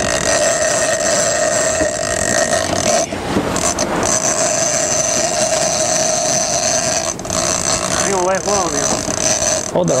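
Steady mechanical drone from machinery on a sportfishing boat, with wind and sea noise, briefly dropping out about three seconds in; a short wavering cry is heard near the end.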